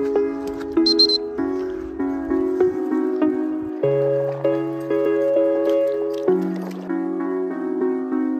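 Background instrumental music: light plucked-string chords with notes struck about twice a second, and a low bass line joining about halfway through.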